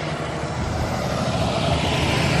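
A semi-truck pulling a box trailer drives past close by. The diesel engine rumbles and the tyres hiss on the road, getting louder as it nears.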